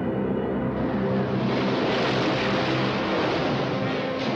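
Rushing roar of a roller coaster train running down its track, swelling about a second in, under sustained low orchestral chords of trailer music.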